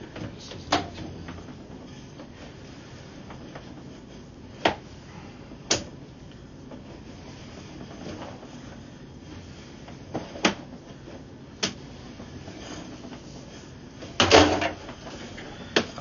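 Sewer inspection camera's push cable being pulled back through a drain pipe: scattered sharp knocks and clicks over a steady low noise, with a louder rattle near the end.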